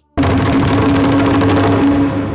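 Dramatic music sting from the score: a fast drum roll of rapid strikes over a held low note, starting abruptly and loud. The roll thins out near the end while the note carries on.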